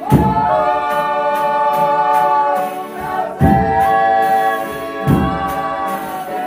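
Folia de Reis company singing a toada in several voices, holding long chord notes that change about halfway through, with accordion and guitars. Deep drum beats land at the start, about three and a half seconds in and about five seconds in.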